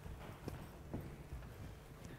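A few faint, irregular footsteps and knocks on a stage, the loudest about a second in, over a low room hum.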